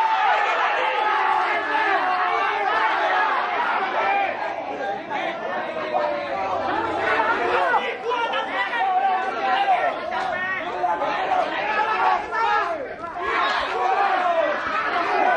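Ringside crowd of spectators chattering, many voices overlapping at once without a break.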